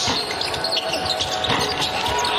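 Basketball game court sound: sneakers squeaking on the hardwood over arena music.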